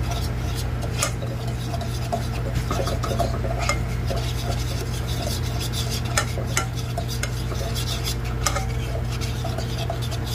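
Metal fork stirring and scraping a thick butter-and-flour roux in a stainless steel saucepan, with repeated scrapes and a few sharper clinks against the pan, over a steady low hum.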